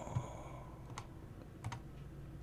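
A few faint, sharp clicks at a computer: one about a second in and two close together near the end, over quiet room tone.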